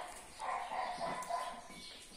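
A dog vocalizing off-camera, a pitched, wavering sound about a second long that starts about half a second in, after a shorter sound at the very start.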